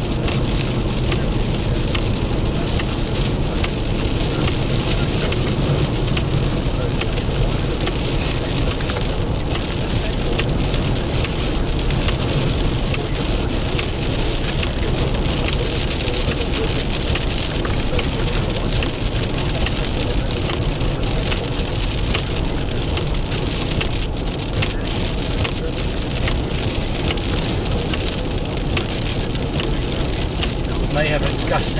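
Rain falling on a moving car's roof and windshield: a steady patter of many drops over constant low road and engine noise.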